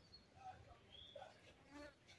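Near silence: faint background with a few soft, brief chirps and a short faint buzz near the end.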